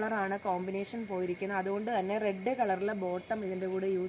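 A woman talking continuously, with a steady high-pitched whine in the background.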